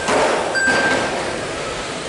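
Electric 1/12-scale GT12 RC race cars running on a carpet track: a steady hiss of motors and tyres, with a brief high motor whine about half a second in.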